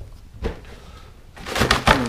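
Two soft clicks, then about a second and a half in a short burst of crinkly plastic rustling and tapping as a plastic food container is handled to tap out leftover scraps.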